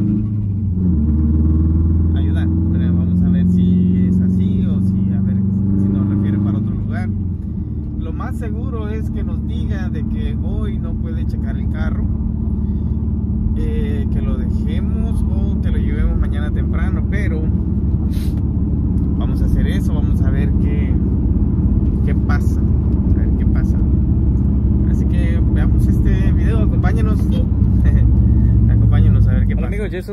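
Subaru car's engine and road noise heard inside the cabin while driving: a steady low rumble whose engine note changes and eases about seven seconds in. Indistinct voices run over it.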